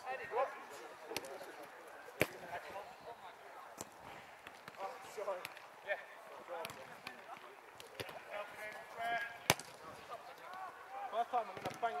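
Sharp thuds of a football being kicked on an artificial pitch, several times, the loudest about two seconds and nine and a half seconds in, with players shouting and calling in the distance.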